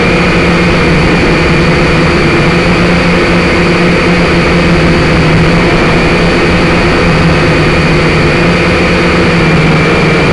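A quadcopter's electric motors and propellers whining steadily, recorded close up by the drone's onboard camera mic, with small shifts in pitch as the throttle changes.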